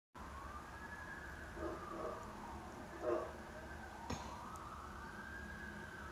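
Faint emergency-vehicle siren wailing, its pitch rising and falling slowly over a few seconds at a time. A few brief soft noises come in its first half, the loudest about three seconds in, and there is a click about four seconds in.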